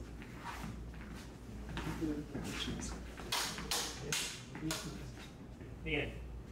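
LED lightsaber blades swinging and clashing in a fencing bout, in a quick run of three or four sharp hits about three seconds in, with scattered lighter sounds around them.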